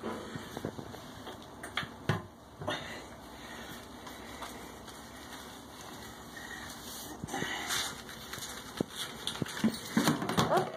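Soft handling noises from a wet cat being lathered and clambering up onto a person's shoulder: scattered rustles and light knocks, with a cluster of light clicks near the end.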